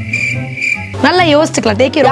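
Cricket-chirp sound effect: a steady high trill that stops about a second in, after which a girl starts talking. A low, steady music bed plays underneath.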